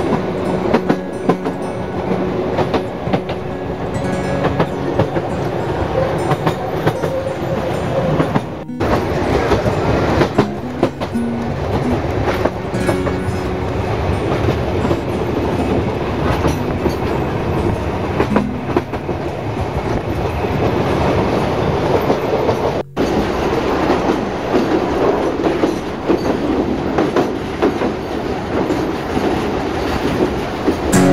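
Historic train running along the track, heard from aboard a carriage: a steady rolling rumble with the irregular click and clatter of wheels over rail joints. It breaks off twice for a moment, about 9 and 23 seconds in.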